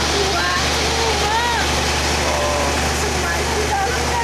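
Steady loud rushing of water spraying from fire hoses, over a low steady hum from a fire engine's pump, with voices calling out above it.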